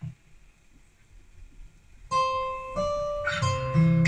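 Instrumental backing track starting about two seconds in: plucked acoustic guitar notes ringing out, with lower bass notes coming in just before the end.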